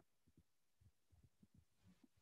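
Near silence, with a few faint, short low thuds.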